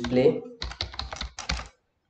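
Computer keyboard being typed on: a quick run of about ten keystrokes.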